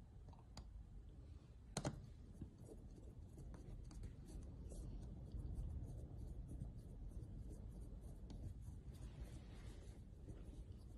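Faint scratching and small clicks of a screwdriver turning the calibration screw on a small fuel level converter module, setting its full-tank reading. One sharper click comes about two seconds in.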